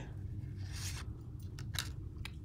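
Pokémon trading cards sliding against each other as a card is moved from the front to the back of the hand-held stack: a soft papery rub followed by a few light clicks.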